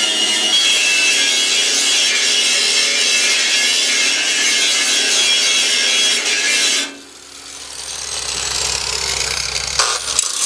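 Angle grinder with a cutoff disc cutting into rusty steel frame rail, a loud, steady, high grinding. About seven seconds in the sound drops off sharply, then builds again, lower, toward the end.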